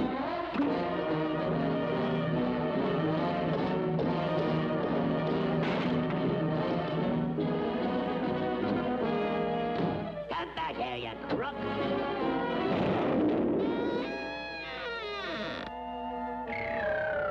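Orchestral cartoon underscore with brass and timpani playing held chords. From about three-quarters of the way in it turns to sliding, wavering tones.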